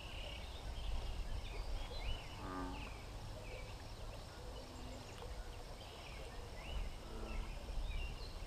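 Quiet pond-side countryside ambience: birds calling in short, repeated chirps, with a low wind rumble on the microphone. About two and a half seconds in there is a brief low animal call, and a fainter one comes near the end.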